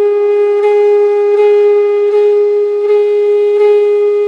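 Background music: a wind instrument holds one long, steady note.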